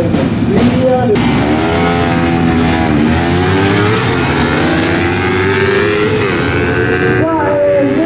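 Two motorcycles launching off a drag-strip start line and accelerating hard through the gears, the engine note climbing and dropping back at each upshift, several times over a few seconds.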